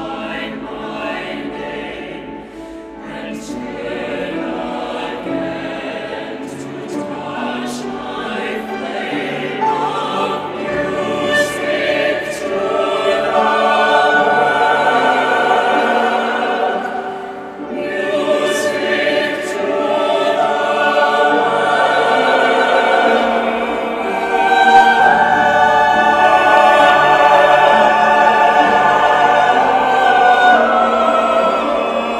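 Mixed SATB choir singing a slow contemporary choral work, the voices swelling steadily louder, easing off briefly just past the middle, then rising to their loudest near the end.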